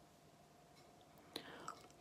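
Near silence: faint room tone, with a short faint click past the halfway point and a smaller one soon after.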